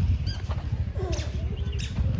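A few short, high chirps, bird-like, over a steady low rumble.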